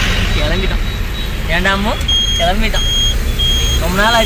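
Steady engine and road rumble inside a moving passenger vehicle, with voices. About halfway through, a high electronic beep starts repeating, about one and a half beeps a second.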